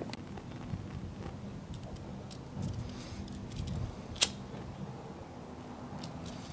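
A cigarette lighter struck once, a single sharp click about four seconds in, amid faint handling of a nylon pull cord whose end is being melted so it won't fray.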